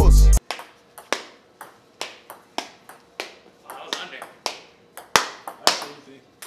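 Ping-pong rally played across a conference table: sharp clicks of the ball off paddles and tabletop, a little under two a second. Loud hip-hop music cuts off abruptly just before the rally begins.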